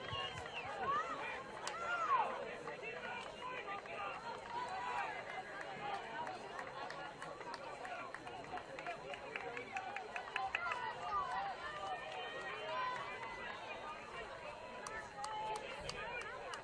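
Distant, overlapping shouts and calls of soccer players and spectators across an outdoor field during play, with a few faint sharp clicks around the middle.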